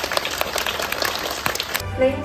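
A small group clapping, many hand claps packed into dense applause; it stops abruptly near the end as music comes in.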